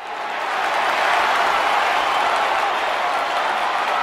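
Audience applause, fading in over the first second and then steady.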